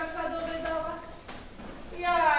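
A woman's voice singing unaccompanied in long held notes, fading out a little after a second in.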